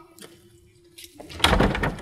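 Wooden church door rattled by its handle: a dense run of clattering knocks begins about one and a half seconds in, the sound of a locked door being tried.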